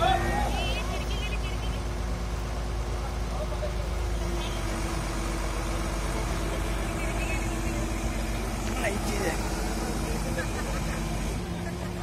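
Diesel engine of a truck-mounted crane running steadily, a constant low hum, with brief voices of workers now and then.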